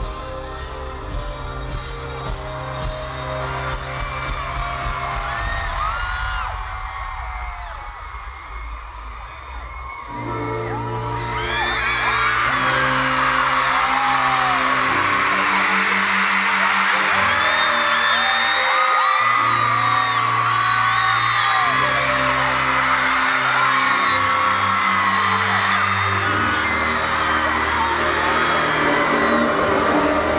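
Live band music in an arena: drums and bass at first, a quieter stretch, then from about ten seconds in, sustained keyboard and bass chords under loud, continuous screaming and whooping from the crowd.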